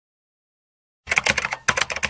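Computer keyboard typing sound effect: a rapid run of key clicks, about nine or ten a second, starting about a second in.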